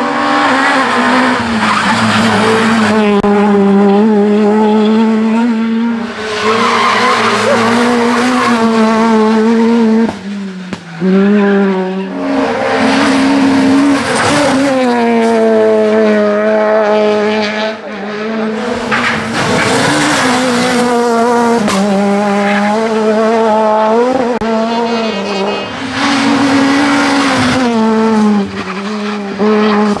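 Rally cars, among them an Opel Adam R2 and a Peugeot 208 R2, passing one after another at full throttle, their engines revving high and dropping in pitch at each gear change and lift-off, with tyres squealing through the bend. Each car's note rises and falls as it comes through, and there are brief breaks between passes.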